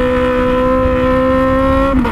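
Honda CB600F Hornet inline-four engine pulling hard in second gear through its stainless-steel aftermarket exhaust, the pitch creeping steadily upward, then dropping suddenly at the very end as the rider shifts up to third. Wind rushes over the microphone.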